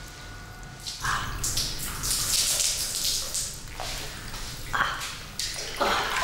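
Water pouring and splashing into a marble hammam basin, in several uneven gushes starting about a second in.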